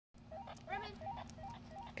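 Faint electronic tone that steps up in pitch, the pattern repeating about three times a second, over a steady low hum.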